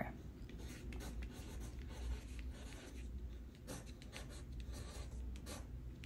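Pencil writing on a sheet of paper: faint, irregular scratching strokes as words are written out.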